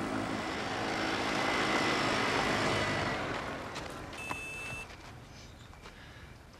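A small motor vehicle running as it approaches, loudest about two seconds in, then fading away. A short high-pitched tone sounds about four seconds in.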